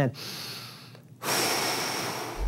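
A man breathing deeply while holding a stretch: a soft breath that fades away, then a long, forceful exhale that starts just over a second in.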